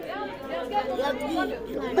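Speech only: people talking, voices overlapping in chatter.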